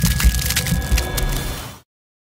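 Crackling, splintering sound effect of an animated end card: dense clicks over low thuds, cutting off abruptly near the end.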